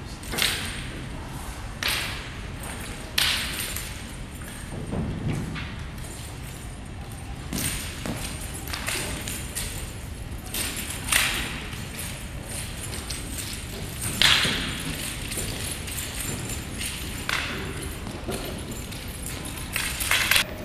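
Wooden three-section staff swung and spun, giving irregular sharp clacks and swishes every second or few, each followed by a short echo; a lower thud comes about five seconds in.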